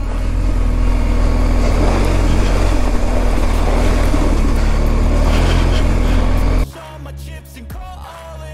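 BMW R1250GS Adventure's flat-twin engine running under way on a gravel track, with heavy wind and road noise, loud and steady. About six and a half seconds in, the ride sound cuts off abruptly and music takes over.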